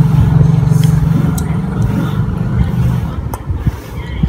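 A motor engine drones steadily and loudly close by, fading after about three seconds, with a few sharp crunchy clicks of fruit being bitten and chewed.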